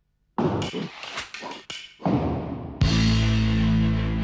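Start of a rock song: a few sharp percussive knocks and thuds, then about three seconds in the full band comes in on a loud, held chord with electric guitars.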